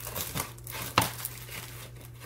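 Plastic packaging crinkling and rustling as makeup brushes are put back into it, with one sharp click about a second in.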